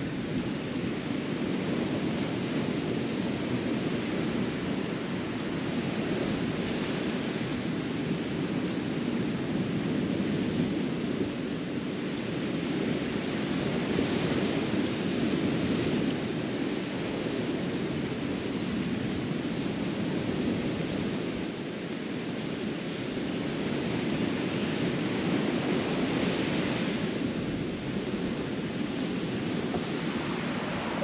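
Ocean surf on a sandy beach: a steady rush of waves that swells now and then, with some wind mixed in.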